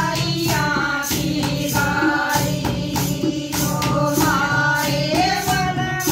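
A group of women singing a Haryanvi jakdi folk song together, over a steady beat from a dholak drum, a clay pot played as a drum and hand claps, with some jingling percussion.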